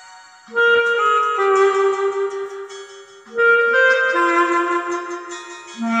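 Soprano clarinet playing the melody of a Korean popular song (gayo) in phrases of held and moving notes. A fresh phrase starts loudly about half a second in, another just after three seconds, and a third near the end.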